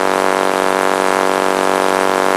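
A steady, loud buzzing hum at one unchanging pitch, with no breaks or changes in speed.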